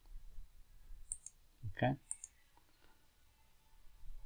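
Two quick computer mouse clicks about a second apart, the first about a second in.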